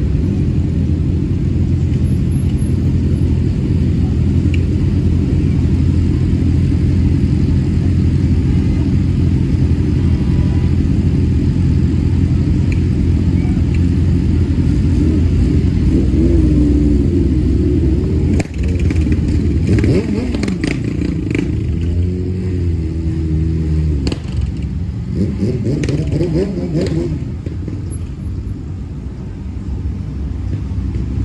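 Sport motorcycle engine idling steadily while stopped in traffic. Partway through, rising and falling pitched sounds and a few sharp clicks join it.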